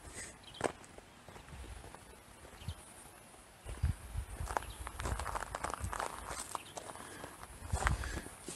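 Footsteps of a person walking: scattered steps and small knocks, sparse at first and coming more steadily about halfway through.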